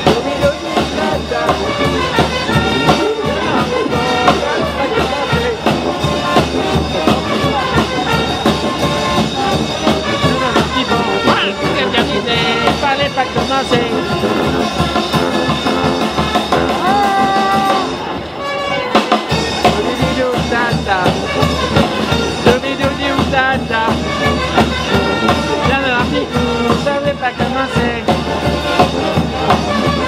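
Street brass band playing: saxophones, sousaphone, trumpets and trombones over a steady bass drum beat, with a brief lull about eighteen seconds in.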